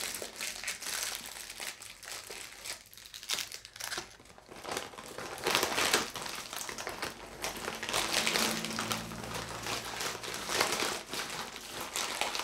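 Packaging crinkling and rustling as it is handled and opened, in irregular bursts with a quieter stretch about three to four seconds in.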